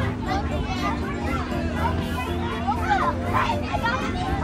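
Several children talking and calling out over one another, with music playing steadily in the background.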